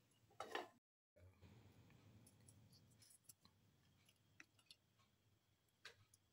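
Near silence: faint room tone with a few faint ticks, broken just before one second in by a moment of dead silence.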